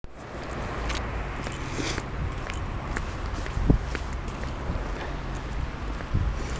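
Footsteps on a frost-covered path, heard as irregular short ticks with one louder thump a little before four seconds in, over a steady low rumble of wind on the microphone.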